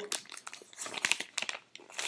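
Paper envelope crinkling and rustling in irregular bursts as it is worked open by hand and the card inside is pulled out.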